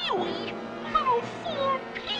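A cat-like meow that falls sharply in pitch at the start, followed by softer gliding tones, over cartoon background music.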